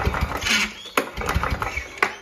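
Victa two-stroke lawn mower engine being cranked over by repeated pulls of its recoil starter cord, turning over without firing. It has low compression, only about 25 psi on the gauge, which is why it won't start.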